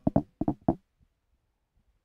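Four quick thumps within the first second, then near silence: handling noise from a handheld microphone being knocked or shifted in the hand.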